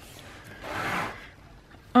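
A paper planner being handled: one brief rubbing swish starting about half a second in and lasting under a second.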